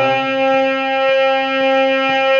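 Harmonium holding a single steady note, its reeds sounding unchanged with no rise or fall.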